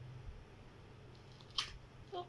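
Quiet room with a faint low steady hum, broken once about a second and a half in by a short crackle of handling, as of a diaper or cardboard packet being handled during a diaper change.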